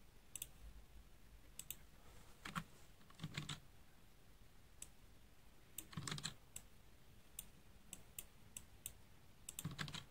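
Faint, scattered keystrokes and clicks of a computer keyboard and mouse, coming in short clusters with pauses between.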